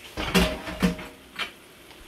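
A few short clanks of metal cookware: the loudest about a third of a second in, a second near the middle, and a light tap later.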